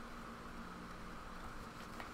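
Faint, steady room background: a low hum with an even hiss and no distinct event.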